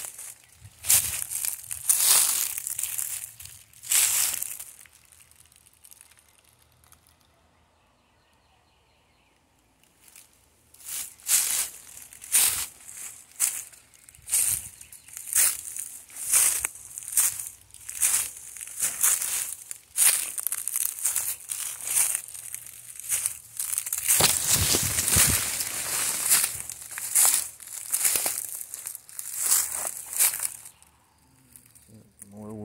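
Footsteps crunching through dry leaf litter and sticks at a walking pace, about one step a second. The steps stop for a few seconds about six seconds in, then start again. A denser, louder stretch of crunching comes about three quarters of the way through.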